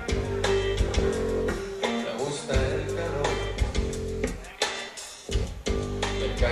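Live rock band playing an instrumental passage: guitar-led music over bass and drums, with regular drum hits.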